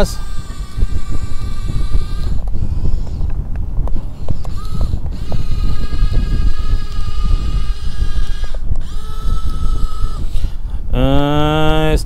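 Small electric gear motors of a Yigong YG258C RC excavator whining in three short runs as it drives and turns on its tracks, with its simulated engine sound switched off. A steady low rumble of wind on the microphone runs underneath.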